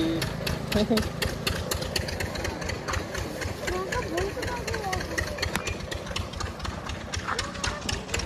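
A vehicle engine running steadily with an irregular clattering noise, and faint voices in the background.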